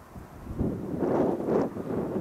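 Gusty wind buffeting the camera microphone, a rough rumbling noise that swells about half a second in.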